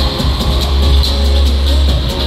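Loud live pop concert music from the venue's sound system, with heavy bass and a steady beat and no singing.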